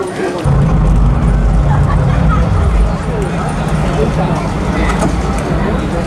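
A deep, steady bass tone from the stage sound system comes in about half a second in and holds, the start of a backing track, under crowd chatter.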